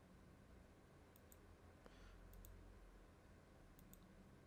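Near silence, with faint computer mouse clicks coming in quick pairs about three times.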